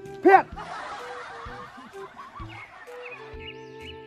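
A voice calls out loudly once at the start. It gives way to a dense, crackling laughter effect over background music, which settles into a held chord near the end.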